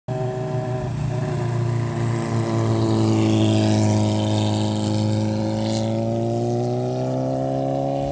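Motorcycle engine running steadily, its pitch slowly rising over the last few seconds.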